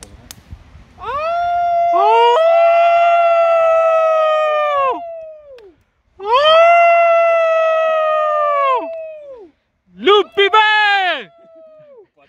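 Men howling like wolves. Two long overlapping howls are held steady and drop in pitch at the end, then comes a second long howl, then a few short yelping howls near the end.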